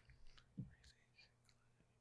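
Near silence: room tone, with a few faint, brief soft sounds such as a breath or a murmur.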